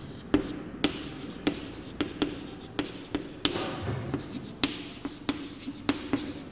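Chalk writing on a blackboard: a series of sharp taps, about two a second, with short scratches between them as the letters are formed.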